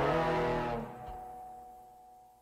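A small live band with upright bass and drums ends a song: the full ensemble cuts off less than a second in, leaving a few held notes ringing and fading away.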